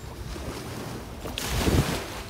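Small waves lapping and breaking on a sandy shore, with wind buffeting the microphone; a louder rush near the end.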